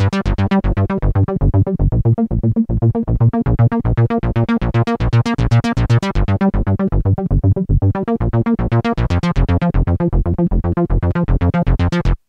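Korg KingKORG virtual-analogue synthesizer playing a fast, even run of short arpeggiated notes over a deep bass. The run cuts off abruptly at the end.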